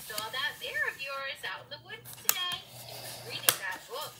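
An indistinct voice in the background, with two sharp knocks on a hard countertop, about two seconds in and again about a second later, as paper is pressed and creased flat by hand.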